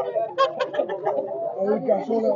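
Bird calls mixed with men's voices in the background, with a few handling clicks, among caged and handled fowl.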